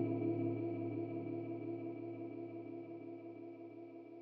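A held, pitched electronic sound, several notes sustained together, washed in reverb and chorus-like modulation from Valhalla VintageVerb and ÜberMod plug-ins. Its tail slowly fades away.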